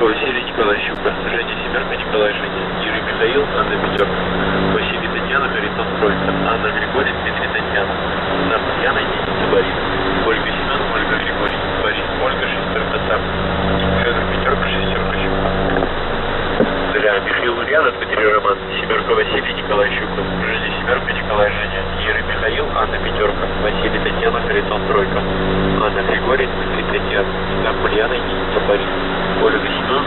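Shortwave radio reception of the Russian military station The Pip on 3756 kHz: a voice reads a coded 'Dlya' message spelled out in the Russian phonetic alphabet, half buried in static and interference, with a steady low hum underneath.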